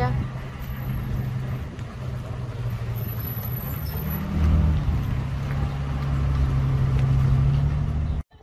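Car engine hum and road noise heard from inside a slowly moving car. The engine's pitch steps up and it grows louder about four seconds in.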